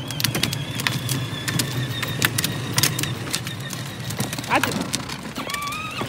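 Battery-powered ride-on toy pickup truck driving along: its electric motor and gearbox give a steady high whine over a low hum, with irregular clicks and knocks from the plastic wheels rolling over the asphalt.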